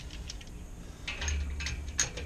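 Light metallic clicks and clinks of a mortise lock body being handled and fitted into a gate's lock pocket, with a sharper click at the end.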